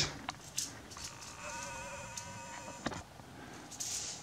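A few light clicks of a Toroflux toy's thin metal rings being handled, with a faint steady buzzing hum for about two seconds in the middle.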